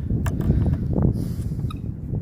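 Wind buffeting a phone's microphone: a loud, gusty low rumble that surges about a second in, with a few light clicks from the phone being handled.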